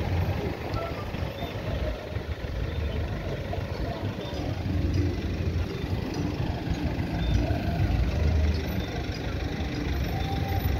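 Cars and a pickup truck driving slowly past on a street, a steady low rumble of engines and tyres that swells a few times as vehicles go by.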